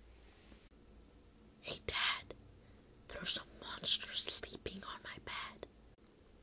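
A boy whispering in several short bursts, beginning a little under two seconds in and stopping shortly before the end.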